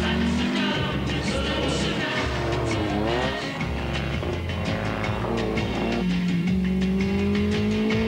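Car engines revving and accelerating on a track, over background music with a steady beat. The engine pitch dips and climbs again about three seconds in, and a rising engine note builds through the last two seconds.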